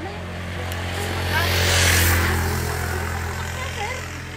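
A motor vehicle passing on the road: its noise swells to a peak about halfway through and then fades, over a steady low engine hum.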